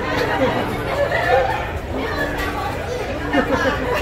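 Several people chattering, voices overlapping at a steady level.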